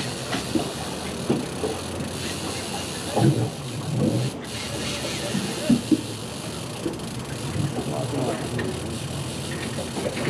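Steady background noise on an open fishing boat on a river, with a few faint, brief voices.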